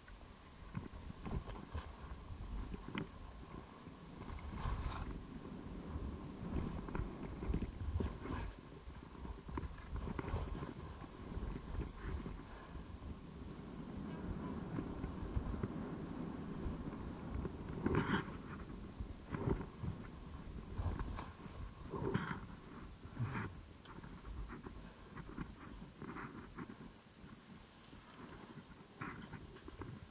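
Skis sliding and scraping over groomed snow on a downhill run, with irregular clicks and scrapes from the ski edges over a low, fluctuating rumble of wind on the microphone.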